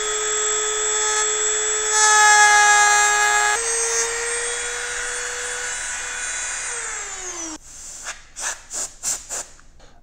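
Dremel rotary tool running with a steady high whine while cutting a small notch into the edge of a plastic Fresnel lens sheet. It gets louder and rougher for about a second and a half, starting about two seconds in. It is switched off about seven seconds in and its whine falls as it spins down, followed by a few light knocks as it is handled.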